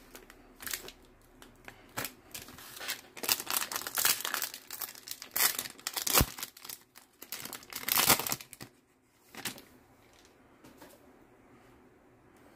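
A Bowman baseball card pack's wrapper crinkling and tearing as it is pulled open by hand, in a run of short, irregular crackles that stop about three-quarters of the way through.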